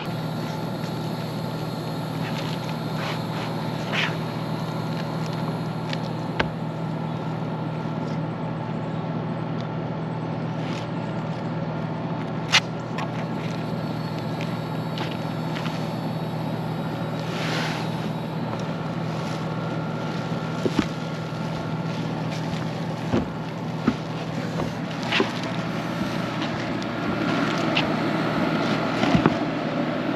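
A steady low hum with wind-like noise, and scattered short clicks and rustles as a fabric roof shade is unrolled and its tie-down straps tensioned.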